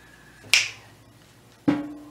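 Two sharp finger snaps, about a second apart.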